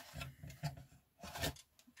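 A few soft plastic rubs and clicks as hot-glued headlight pieces are pulled out of a small plastic RC truck cab by hand.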